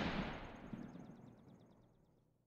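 The decaying tail of a boom-like impact sound effect, fading steadily away over about two seconds, with a faint rapid high flutter on top.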